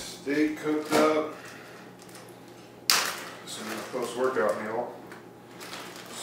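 A single sharp knock about three seconds in, a hard object handled in a kitchen, with short stretches of a man's voice before and after it.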